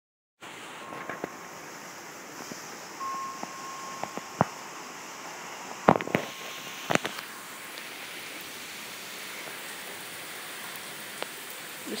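Steady rain falling, an even hiss, with a few sharp knocks about halfway through.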